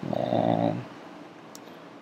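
A man's drawn-out, low "uhh" hesitation sound, lasting just under a second, then quiet room tone with one faint click about a second and a half in.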